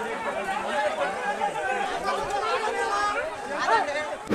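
A crowd of men arguing, many voices talking over one another at once.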